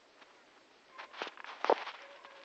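Footsteps crunching through dry fallen leaves: quiet for the first half, then a few crackly steps, the last the loudest.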